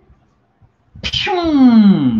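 A person sneezing loudly about a second in: a sudden sharp burst followed by a voiced tail that falls in pitch for about a second.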